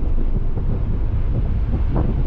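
Nissan 300ZX being driven: a steady low rumble of engine and road noise, with wind buffeting the microphone in irregular gusts.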